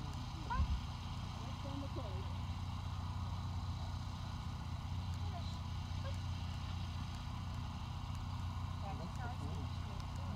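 Steady low hum of outdoor background noise, with faint distant voices now and then.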